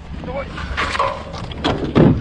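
Gear being loaded into a pickup truck's bed: a few knocks and clatters over a steady low rumble, with brief shouts.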